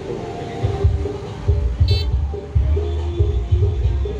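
Music played through a large parade sound system, with heavy, deep bass beats under a held melody line. A short horn toot sounds about two seconds in.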